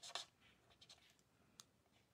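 Very faint scratching of a marker tip stroking over cardstock as small areas are coloured in, with a single soft click about one and a half seconds in; otherwise near silence.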